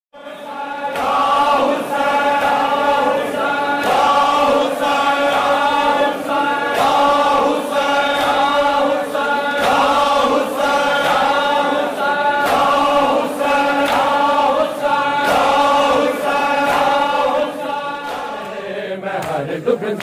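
A group of voices chanting a mournful melody in unison over a steady beat of sharp strokes.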